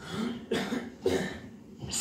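A man clearing his throat in a few short coughs into a handheld microphone, just before starting his verse.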